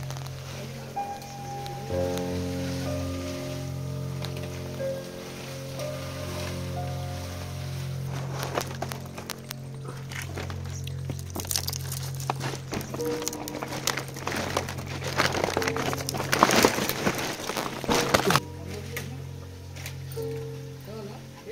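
Background music with sustained notes throughout. From about 8 seconds in, dry palm fronds and palm-leaf strips crackle and rustle as they are handled and tied onto a thatched hut frame. The crackling cuts off suddenly near the end.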